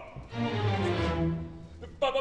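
Opera orchestra playing a short passage of sustained low notes on cellos and double basses, swelling and then fading, in a gap between sung phrases.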